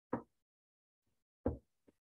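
Two short, sharp knocks about a second and a half apart, followed by a faint tap near the end.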